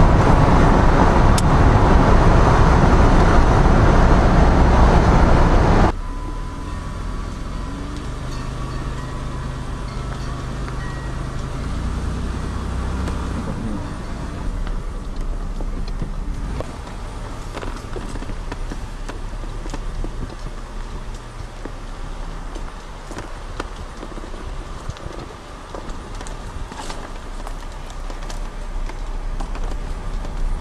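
Road and wind noise of a car heard from inside the cabin at highway speed. About six seconds in it cuts off abruptly to the quieter, low hum of the car driving slowly.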